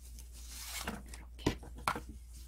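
Grosgrain ribbon rubbing and sliding against a plastic-coated hanger bar and fingers as it is looped on and pulled through, with two sharp ticks near the end.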